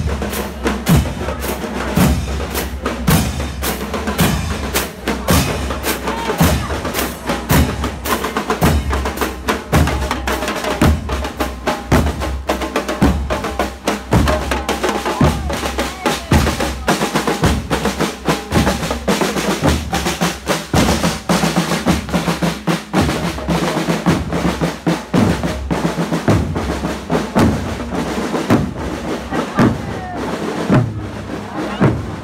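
A marching band's percussion section playing a steady marching beat on snare drums, bass drums and cymbals, with regular bass-drum thumps under quick snare strokes.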